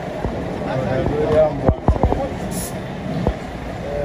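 Indistinct voices of several people talking over a vehicle engine running at idle, with a few short clicks or knocks in the middle and near the end.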